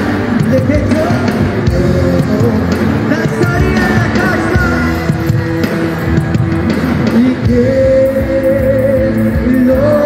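A live worship band with electric guitars, drums and keyboard playing through a PA system, with a singer's voice over it. A long held note comes in about seven and a half seconds in.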